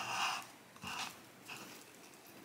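Soft rustling as plant leaves and a clear plastic cup are handled close to the microphone, in three short bursts, the first the loudest.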